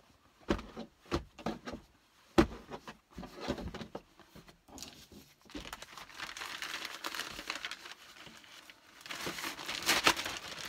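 Plastic poly mailer bag crinkling and rustling as a folded pair of denim jeans is pushed into it. A few sharp separate handling sounds come in the first half, the strongest about two and a half seconds in, then the crinkling runs on continuously from about halfway and grows near the end.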